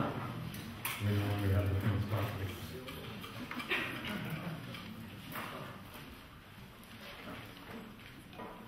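Faint, indistinct talking among the audience, with a few light knocks. It grows quieter toward the end.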